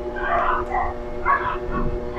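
A small pet dog, the household's Shih Tzu, makes two short, soft cries, one soon after the start and one about two-thirds of the way through, over a steady background hum.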